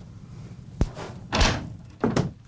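A door latch clicks sharply a little under a second in, followed by a louder burst as a room door is pushed open.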